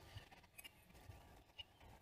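Near silence, with a few faint short ticks.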